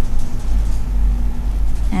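Steady low rumble with a faint steady hum: the background noise of the recording, heard in a pause between words.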